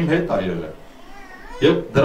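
A man preaching in Armenian into a handheld microphone in a small room, with a short pause in the middle.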